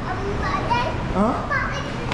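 A toddler's voice: a few short, high-pitched babbling sounds that glide up and down in pitch.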